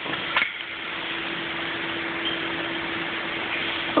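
Steady machinery hum with a constant low tone under a hiss of running equipment, with a sharp click about half a second in.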